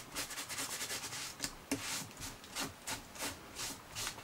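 A cloth rubbed back and forth over a glued die-cut card panel to press it down onto its card base: a string of short, hissy strokes, about three a second.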